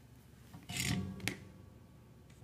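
Hands shifting a length of LMR-400 coax cable against a cork mat: a brief rubbing scrape followed by one sharp click.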